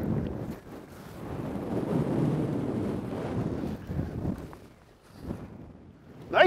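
Wind rushing across the microphone over rough sea, a steady noise that swells about two seconds in and dies away near the end.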